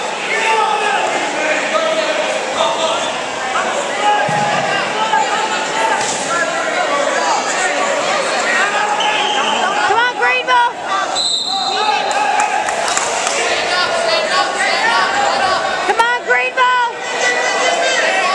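Indistinct talk from spectators echoing in a gymnasium during a wrestling bout, with two bursts of rapid squeaks from wrestling shoes on the mat, about ten seconds in and again near the end.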